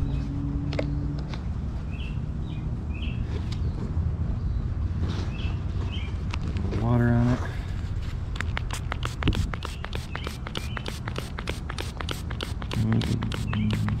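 Outdoor ambience with a steady low rumble and a few short high chirps. In the second half comes a fast run of sharp ticks, about five a second.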